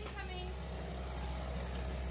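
Steady low mechanical hum of a running engine, with faint voices in the background near the start.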